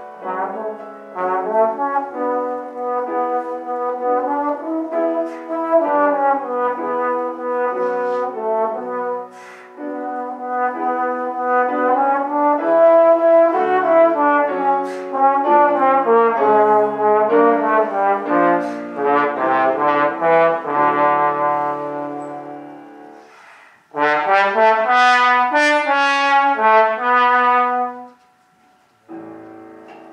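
Trombone playing a lively melody with piano accompaniment. The music fades almost to nothing about two-thirds of the way through, then a loud closing phrase ends abruptly near the end, followed by a soft lingering chord.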